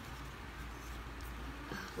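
Quiet handling of printed paper cards, a faint rustle with no distinct strikes, over a steady low hum.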